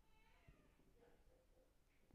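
Near silence, with a faint brief pitched sound in the first half-second.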